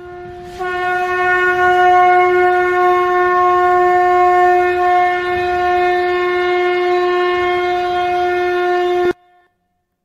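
One long blown horn note held at a steady pitch, already sounding at the start and swelling fuller about half a second in, then cutting off suddenly about nine seconds in.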